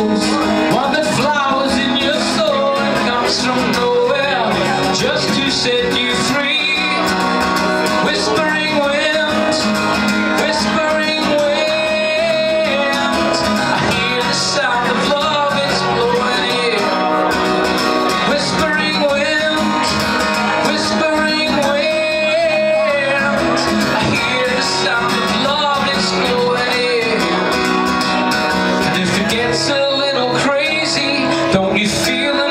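Live song: a man singing to his own acoustic guitar, the vocal line rising and falling over steady strummed chords.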